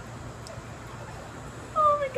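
Steady low background noise, then near the end a girl's loud, high-pitched whimpering squeal that slides down in pitch, a reaction to raw egg cracked onto her head.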